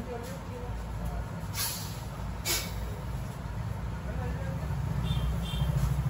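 Steady low rumble of street traffic, with two short hisses about a second apart near the middle.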